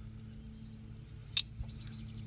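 Flush cutters snipping through a small 3D-printed plastic support tab: one sharp snip about one and a half seconds in, over a faint steady hum.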